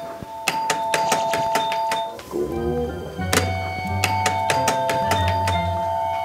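Doorbell rung over and over in quick succession, its chimes running together into a held two-note tone, over background music.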